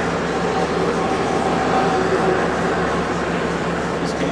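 Steady mechanical hum of running machinery, a constant low drone with a few held tones.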